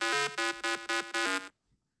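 Buzzy 8-bit style synthesizer music: a short repeating pattern of quick notes, about four a second, that cuts off suddenly about one and a half seconds in.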